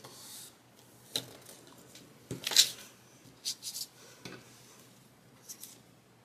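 Paper planner sheets and decorative tape being handled: a series of short rustles and scrapes as the tape is laid down and rubbed onto the page, the loudest about two and a half seconds in.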